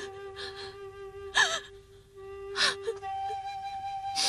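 A woman crying: three sobbing, gasping breaths, the middle one loudest with a falling cry, over soft background music with a flute holding long notes.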